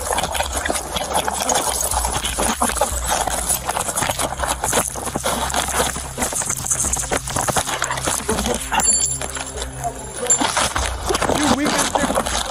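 Body-camera audio of a close physical struggle and foot chase: rapid rustling and knocking of clothing and gear against the microphone, with quick footfalls and muffled shouting voices.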